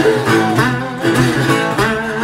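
Resonator guitar played fingerstyle in a blues song, a guitar passage between sung lines, with some notes bending in pitch.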